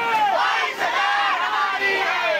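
A crowd of protesters packed inside a bus, shouting together with many high, raised voices overlapping.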